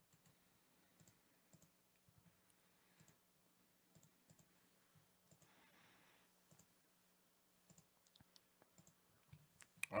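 Near silence with faint, scattered computer mouse clicks, repeated as the randomize button is clicked over and over, over a faint low hum.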